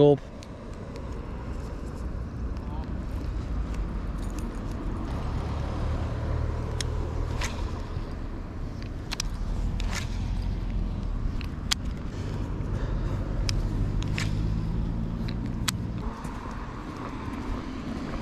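Low, steady rumble of a motor vehicle engine, its hum shifting a little higher in the second half, with a few light clicks scattered through.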